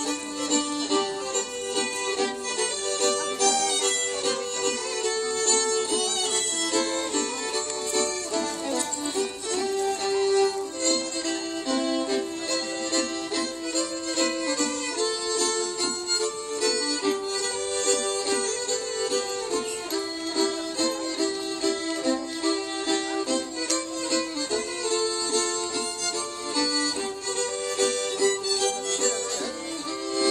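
Live Swedish folk dance music: several fiddles playing a dance tune together, with a steady beat.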